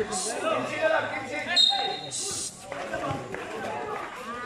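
Voices of spectators and players around a basketball game, with a basketball bouncing on the concrete court and a brief high-pitched tone a little before the middle.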